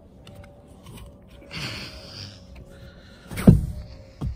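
Handling noise at a pickup truck's rear bench seat: a brief rustle near the middle, then one loud thump about three and a half seconds in as the seat cushion is moved.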